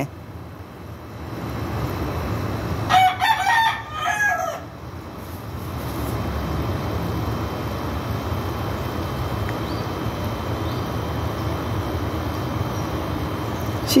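A rooster crows once, a high-pitched crow of under two seconds about three seconds in, over a steady low rumble.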